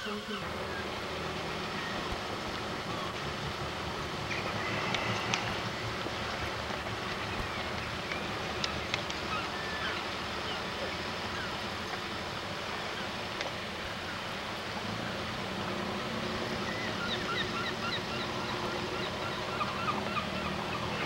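Steady outdoor background noise, with a few faint gull-like calls about four seconds in and again near the end.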